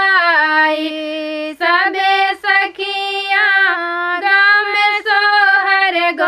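Two women singing a dadar folk song together in unison, with long held notes and short breaks between phrases, and no instruments.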